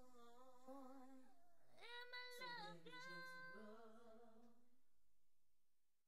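Quiet female a cappella vocals, slowed down so the pitch is lowered, holding a few long wordless notes and then fading out to silence at the end of the song.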